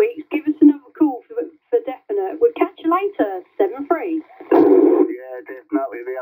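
Speech over a CB radio on FM, with a half-second burst of hiss about four and a half seconds in.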